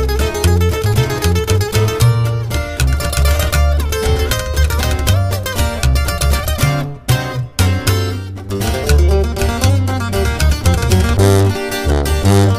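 Instrumental corrido music with no singing: a requinto guitar picks a fast lead line over strummed guitar and a deep bass line. The band drops out briefly about seven seconds in, then comes back.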